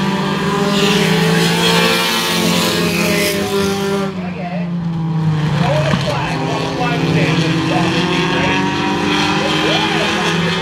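Engines of several pure stock race cars running as they lap a short oval, their notes drifting up and down in pitch as the cars work through the corners.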